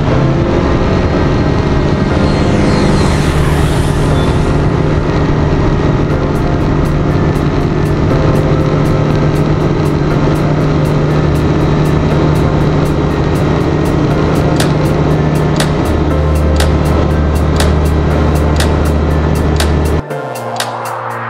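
Light single-engine bush plane's piston engine and propeller running at a steady, loud drone, its low note shifting a little near the end.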